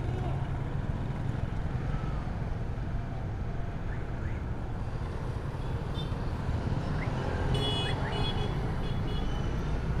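Motorcycle riding slowly in city traffic: a steady low engine and road rumble with a wash of street noise. A faint high-pitched tone sounds for about a second and a half near the end.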